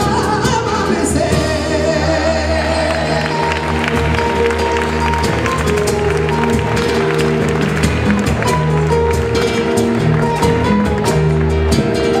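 Live band music: a male voice sings briefly at the start, then the band plays on without him, with low bass notes, a steady beat of cymbal and drum strokes, and guitar.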